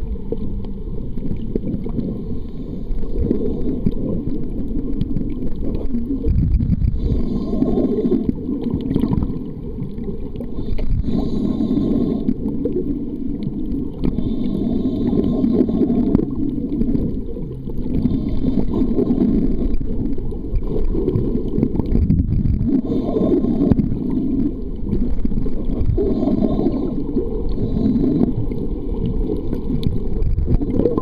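Muffled underwater sound picked up by a submerged camera: a low rumble of moving water that swells and eases every few seconds.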